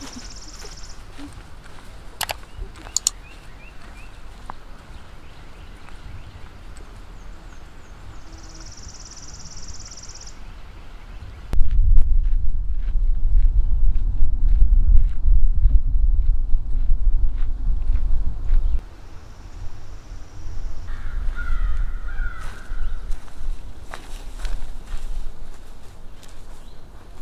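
Birds singing outdoors, with high trills and chirps. About a third of the way in, wind starts buffeting the microphone as a heavy low rumble; it lasts about seven seconds and stops suddenly, with footsteps on a dirt path under it. A harsher bird call comes later, as the rumble eases.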